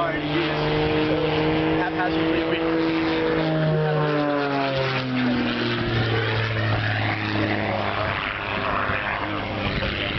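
Propeller airplane droning as it flies past, its engine pitch dropping between about four and six seconds in, then holding lower.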